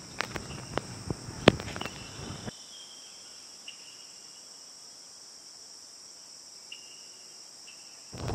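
Crickets chirping as a steady, high-pitched drone, with a few sharp clicks and low rustling in the first two or three seconds.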